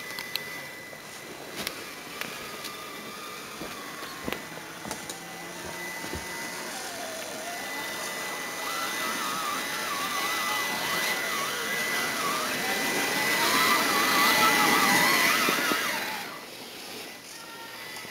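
A 1/6-scale RC Jeep crawler's motor and gearbox whining, the pitch wavering up and down with the throttle and growing louder as it approaches, then dropping away about sixteen seconds in. A few sharp clicks in the first seconds.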